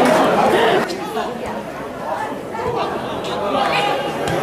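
Several spectators chattering at once, voices overlapping, a little quieter from about a second in.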